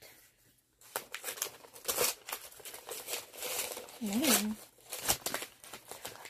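Paper wrapping on a book parcel being torn and crinkled off in a run of irregular rustles and rips, starting about a second in.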